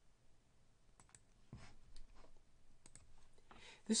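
A few faint clicks of a computer mouse, some in quick pairs.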